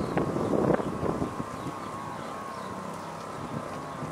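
Wind noise on the microphone over steady outdoor traffic background, with a faint steady whine running underneath.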